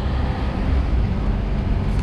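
Steady street traffic noise from cars on a wet road: a low rumble with a hiss of tyres above it.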